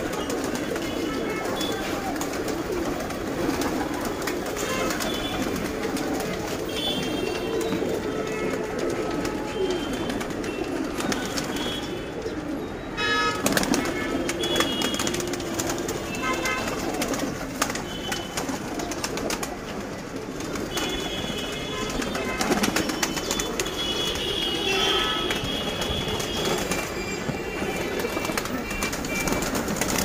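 A flock of fancy pigeons in a loft cooing together, a continuous chorus of many overlapping coos.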